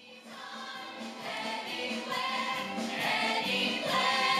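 A musical theatre cast singing together in chorus with accompaniment, starting quiet and growing steadily louder.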